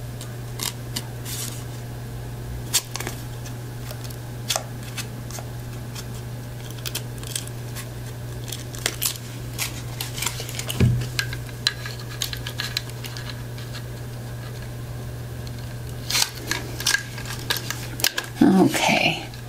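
Scattered light clicks and taps of small craft pieces and a metal tin being handled on a tabletop, with a denser run of clicks near the end as the tin is picked up and one soft thump partway through, all over a steady low hum.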